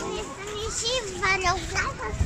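Young children's high-pitched voices talking and calling out.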